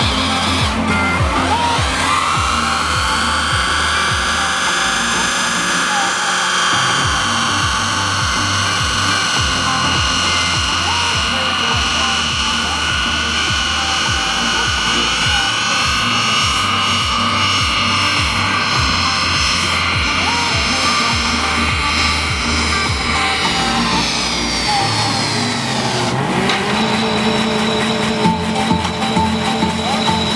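Toyota Carina held at high revs in a front-wheel burnout, the engine and spinning front tyres screaming at a steady pitch; the revs drop briefly near the end and climb again. Music with a beat plays underneath.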